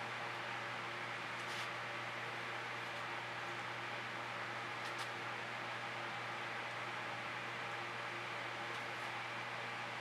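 Steady background noise: an even hiss over a low steady hum, with a few faint ticks.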